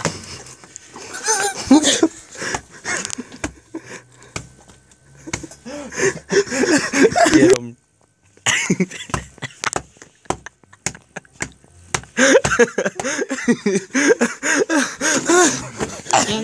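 People's voices talking indistinctly and laughing, with a brief drop to silence about eight seconds in.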